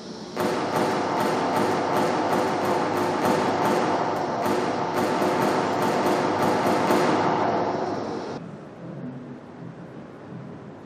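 Kalashnikov-type rifle fired in a long run of shots, about three a second, the reports blurring together with reverberation. It stops abruptly near the end. Heard as a gallery projection's soundtrack.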